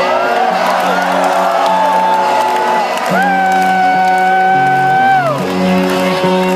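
Live rock band playing steady sustained notes over a bass line, heard from within the crowd, with fans whooping and cheering. A voice close to the phone holds one long note from about three seconds in to near the end.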